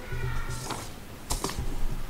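A few short rustles and clicks of paper notes being handled at the lectern, over a low steady hum.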